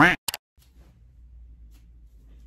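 A short sharp click just after the start, then quiet room tone with a faint low hum.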